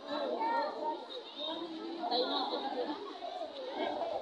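A crowd of young girls chattering all at once, many overlapping children's voices.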